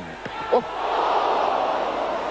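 Football crowd noise swelling about a second in, the fans reacting to a shot on goal and the keeper's diving save.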